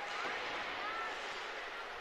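Ice rink ambience during play: a steady hiss with faint, distant voices.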